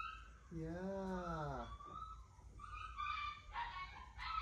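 F1B mini Aussiedoodle puppy whining: a few thin, high whimpers in the last second and a half.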